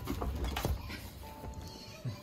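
A baby vocalizing briefly in short sounds over background music, with a few knocks in the first second.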